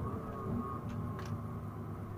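Coach engine running low, heard from inside the cabin as the bus moves slowly, with two short clicks about a second in.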